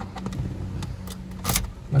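Car key and key ring clinking as the key is put into the ignition lock, with a few small clicks and one brief jingle about a second and a half in.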